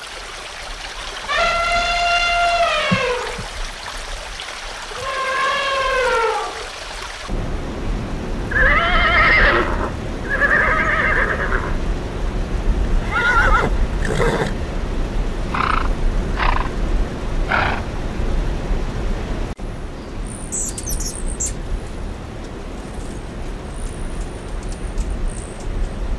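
Elephants trumpeting twice, each call long and falling in pitch. After that a horse neighs and whinnies in a string of calls, and near the end a hummingbird gives a brief burst of very high chirps.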